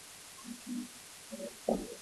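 A quiet classroom pause with a few faint, short, low murmurs, likely students answering under their breath, and a soft bump near the end.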